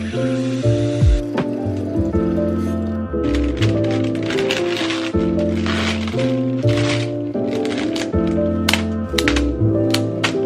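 Instrumental background music with held chords over a bass line. Under it, a kitchen faucet runs briefly at the start, and from about three seconds in, the flowers' plastic wrapping crinkles.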